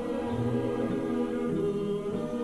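Choral music: a choir singing long held chords over a low bass note.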